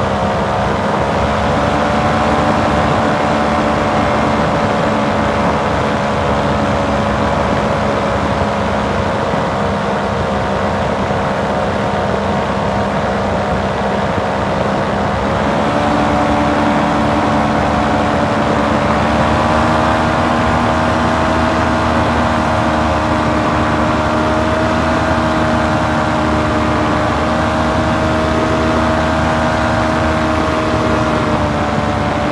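Powered paraglider (paramotor) engine and propeller running steadily in flight, a droning note with several overtones. About halfway through the engine speed rises a little and holds at the higher pitch.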